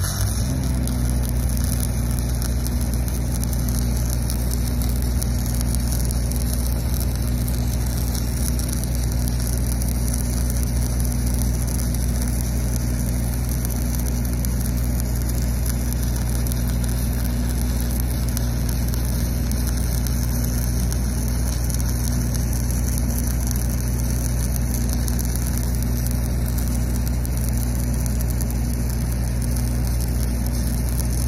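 Stick-welding arc burning an eighth-inch 7018 low-hydrogen rod at about 140 amps: a steady crackling sizzle, struck right at the start and running on. Underneath, the steady drone of an engine, which changes pitch as the arc is struck and it takes the load.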